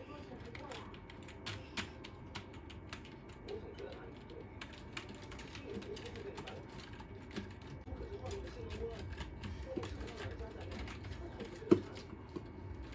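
Computer keyboard keys clicking irregularly as small children mash them at random, with one louder knock near the end.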